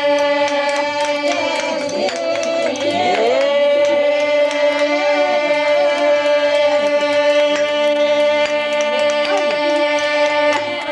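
Traditional folk music: a steady held drone with a wavering, gliding melody over it, and frequent light sharp knocks.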